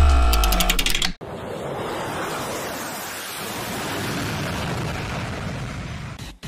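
Edited-in transition sound effect: a deep, droning hit with a ringing tone for about a second, then a steady rushing noise like surf or rain that fades a little toward the end.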